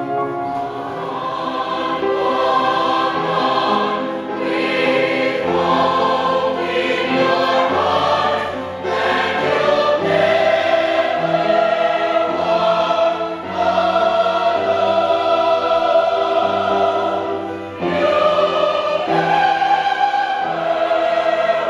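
A large mixed chorus of men's and women's voices singing together in long held phrases, with short breaks between phrases where the chords change.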